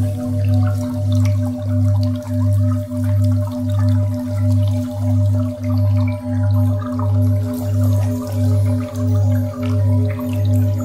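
Meditation drone music built on a steady 528 Hz tone over a deep low tone that swells and fades about one and a half times a second. Faint, scattered drip-like ticks sound above it.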